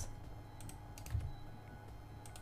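A handful of faint clicks from a computer keyboard and mouse: single key presses and mouse-button clicks at irregular moments.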